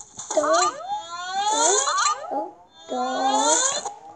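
A high, squeaky voice sliding up and down in three long, drawn-out squeals, the last held on a steadier pitch.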